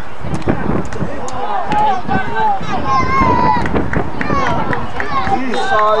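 Several spectators at a football game shouting and calling out over one another while a play runs, their voices overlapping and rising and falling in pitch.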